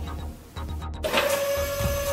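Electronic machine-whirring sound effect of a robot mech suit powering up: a steady high hum that starts about halfway through, with faint pulses about twice a second.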